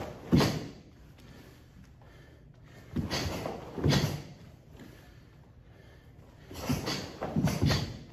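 Karate uniforms snapping and bare feet striking a wooden floor during fast punch, kick, punch combinations, coming in three clusters of two or three sharp swishing hits a few seconds apart.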